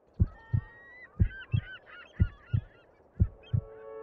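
Deep double thumps like a slow heartbeat, a pair about once a second, four pairs in all. Under them a flock of birds is honking, goose-like.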